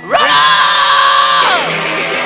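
A live punk band kicking off a song with a loud yell into the microphone: it rises in pitch, holds for about a second and a half, then slides down as the band plays on.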